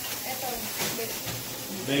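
Faint voices talking in the background over a steady hiss.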